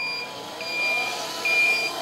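Electronic reversing beeper of a 1/10-scale RC truck (MD Model UM406) sounding while the truck backs up: a high steady beep repeating about once every 0.8 s, three beeps here, over a motor whine that rises and falls.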